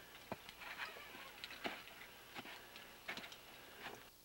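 Faint, irregular clicks and light taps, about half a dozen of them spread through a few seconds, over a quiet background.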